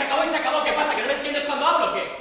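Loud speech from an actor on stage, words not made out by the transcript, pausing briefly right at the end.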